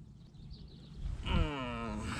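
A man's drawn-out effortful groan, falling in pitch, starting about a second in as he bends down to lift a fish from the water. Before it there is only faint outdoor background.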